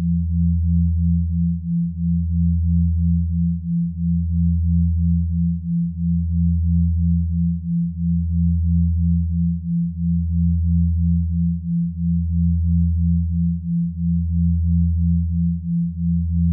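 Synthesized low sine tones of a binaural-beat track: a deep hum that dips and swells about every two seconds under a slightly higher tone pulsing about three times a second, with nothing else.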